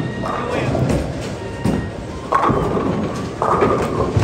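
Bowling-alley din: a bowling ball rolling down the lane and hitting the pins about two and a half seconds in, over voices calling out and background music.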